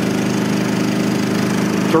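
Champion 3400-watt inverter generator's small single-cylinder four-stroke engine running steadily with no load on it yet, a steady even hum.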